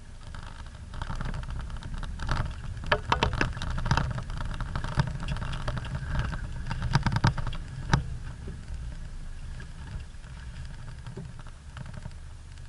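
Off-road 4x4's engine running low, heard from inside the vehicle, with a dense run of knocks and rattles from the body as it drives over rough, rocky ground, heaviest between about two and eight seconds in.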